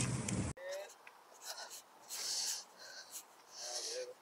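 Short, faint bursts of water splashing as someone wades through a shallow river, after a louder noisy first half second that stops abruptly.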